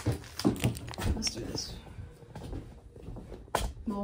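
Items being moved and set down by hand: several light knocks and clatters in the first second and a half, and another sharp knock near the end, in a small room.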